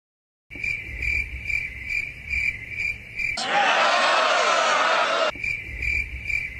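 Cricket chirping sound effect, steady high chirps about two or three a second, the stock comic cue for an awkward silence. About three and a half seconds in it breaks off for roughly two seconds of loud, noisy voices, then the chirping resumes.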